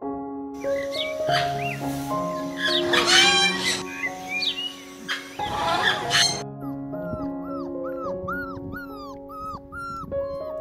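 Calls of an eclectus parrot, a few irregular squawks, over gentle background music. After about six seconds they give way to puppies yelping: a quick run of short, high yelps, about two a second.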